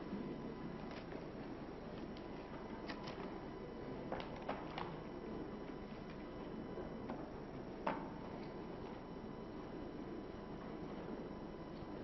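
Quiet conference-hall room tone: a steady low background hum with a few faint, short clicks and knocks, the sharpest about eight seconds in.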